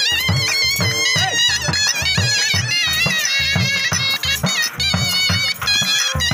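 Folk music for horse dancing: a reedy wind instrument plays a wavering, ornamented melody over a steady drum beat of a few strokes a second.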